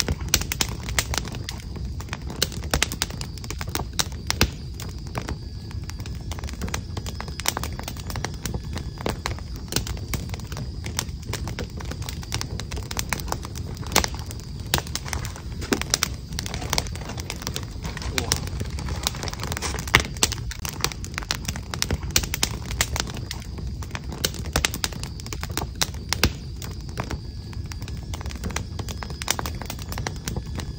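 Crackling wood fire: irregular snaps and pops of burning logs over a low steady rumble.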